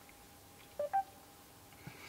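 A short two-note rising electronic beep from the Mercedes-Benz A-Class's MBUX voice assistant, about a second in: the prompt tone showing the system is ready to take a spoken command.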